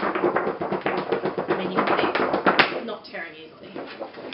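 Thick, sturdy art-print paper being flexed and handled: a dense run of crackles and taps for about the first two and a half seconds, then much quieter.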